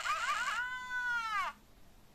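LEGO Super Mario interactive figure's small speaker playing its electronic defeat sound: a warbling, voice-like cry that settles into a held tone and cuts off about a second and a half in. The figure's eyes show X's while it stands on the red lava brick, the sign that Mario has been knocked out.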